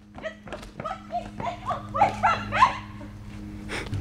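Running footsteps on a paved driveway, with a few short yelps in the distance between about one and three seconds in, over a steady low hum.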